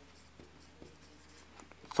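Faint squeak and scratch of a felt-tip marker writing words on a whiteboard, in a few short strokes.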